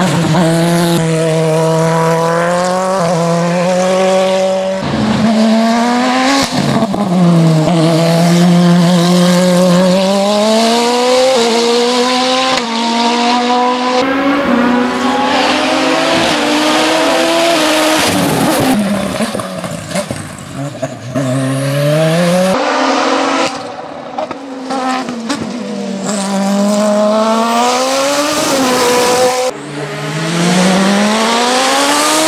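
Osella PA 2000 Turbo sports-prototype race car's turbocharged engine at full throttle up a winding hill-climb course. Its pitch rises steeply again and again as it runs through the gears, with short drops at each shift and lift for the corners.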